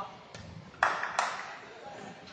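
Two sharp, ringing hits of a sepak takraw ball being struck, about a third of a second apart, about a second in.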